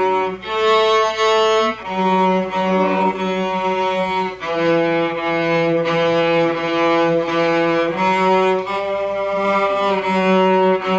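Two cellos playing a slow duet with long bowed notes, the pitch changing every second or two.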